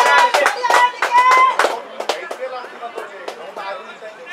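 Men's voices calling out and chattering close by, with a few sharp clicks mixed in; loudest in the first second and a half, then quieter.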